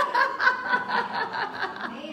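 A woman laughing: a quick run of short, repeated laughs.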